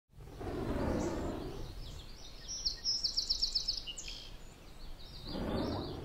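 Birds chirping over a low rushing ambient wash, with one quick run of repeated high chirps about three seconds in. The wash swells near the start and again near the end.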